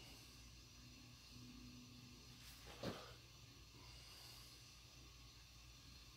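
Near silence: room tone with a faint low hum, broken once, nearly three seconds in, by a short soft click.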